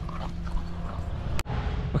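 An Australian cattle dog (red heeler) moving about on dry dirt over a steady low rumble. The sound breaks off abruptly about one and a half seconds in.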